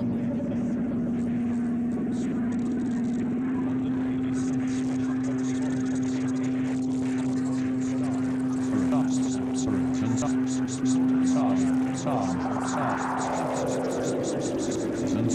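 Modular synthesizer drone: a steady low tone with held overtones above it. From about halfway, fast high clicks come in, and near the end there are rising and falling pitch sweeps.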